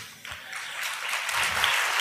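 Audience applauding, the clapping building up within the first half second and then going on steadily.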